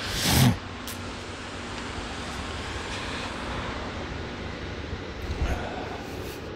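Steady background rush with a faint low hum, after a brief burst of noise on the microphone in the first half second.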